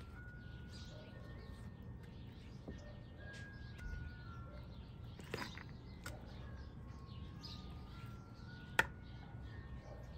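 Birds chirping in the background, with a few light clicks of a metal spoon against an enamel bowl as filling is scooped; the sharpest click comes near the end.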